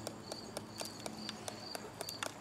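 Faint insect chirping outdoors: a high, pulsing trill repeating about three times a second.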